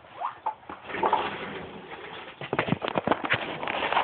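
Handling noise from the camera being picked up and tilted down: rustling and scraping, then a quick run of sharp knocks and bumps in the second half.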